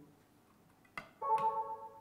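A click, then the Karl Storz Autocon III 400 electrosurgical generator sounds a steady, chord-like alarm tone for under a second. It is the error alert for no neutral electrode being connected when monopolar mode is activated.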